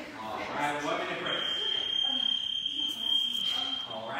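A single long, steady, high-pitched electronic beep starting about a second in and holding for nearly three seconds, with unclear voices underneath at the start.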